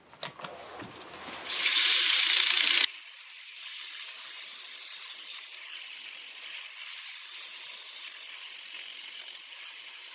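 Hand-held 80-grit sandpaper hissing against walnut blocks spinning on a lathe. The hiss comes in loud about a second and a half in, cuts off abruptly near three seconds, and a much fainter, thinner steady hiss goes on after.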